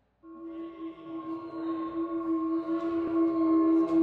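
Electronic singing-bowl tones from an iPad instrument app: several steady ringing pitches sounding together, starting just after the beginning and slowly growing louder.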